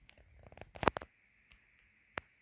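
A brief cluster of clicks and rustling, with the loudest click just under a second in, over a faint steady high hiss.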